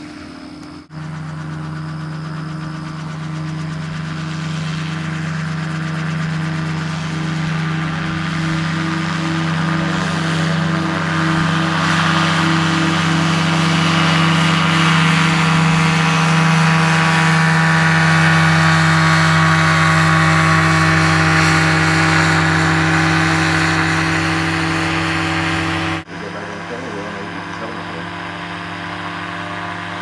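Dominator gyroplane's pusher engine and propeller running steadily at a constant pitch, growing louder as it passes close by around the middle and easing off after. The sound breaks off abruptly and resumes about a second in and again near the end.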